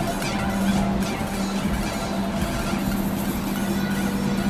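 Japanese-style harsh noise music: a dense, unbroken wall of distorted noise over a steady low drone.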